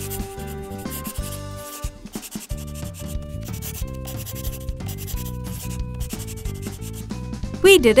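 Felt-tip marker rubbing on paper in repeated strokes as it traces thick black outlines, over light background music.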